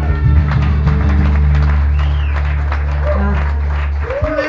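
Acoustic guitar strumming the closing chords of a song, the last chord held and ringing, with clapping and voices starting over it.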